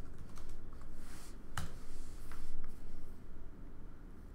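Typing on a computer keyboard: a few separate keystrokes, the sharpest about a second and a half in.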